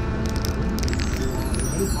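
Steady road rumble of a moving car heard from inside, with music fading under it and a few light clinks about half a second in.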